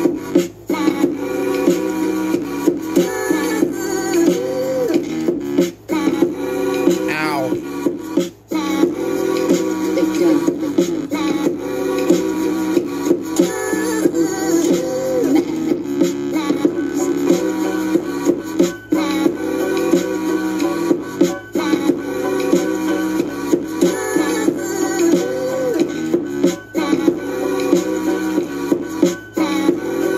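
Music playing from a CD through the built-in speakers of a Sony CFD-S50 boombox.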